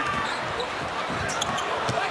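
Basketball being dribbled on a hardwood arena court, with faint knocks over the steady murmur of an arena crowd.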